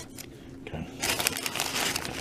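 Paper food wrapper crinkling and rustling as a hand takes hold of a taco and pulls it out, starting about halfway in.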